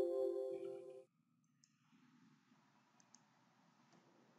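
The last second of a Windows system alert chime dies away, followed by a few faint computer-mouse clicks.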